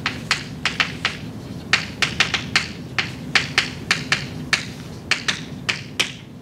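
Chalk writing on a blackboard: about twenty sharp, irregular clicks and taps as the chalk strikes the board stroke by stroke.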